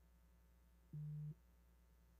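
A single short, low-pitched electronic beep, steady in pitch and lasting under half a second, about a second in, over a faint steady low hum.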